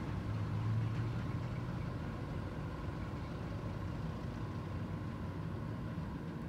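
A steady low engine hum over a faint even background noise.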